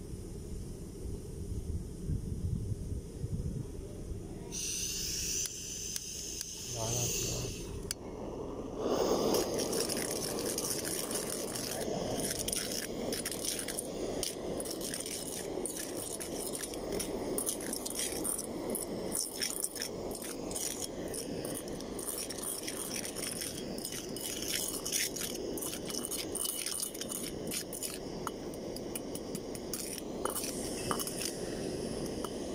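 Soil and grit scraping and rattling inside a metal soil-test cylinder as it is rocked back and forth, a steady dense run of small clicks from about nine seconds in. A short hiss comes about five seconds in.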